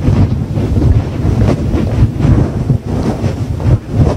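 Wind buffeting the microphone: a loud, gusting low rumble that rises and falls.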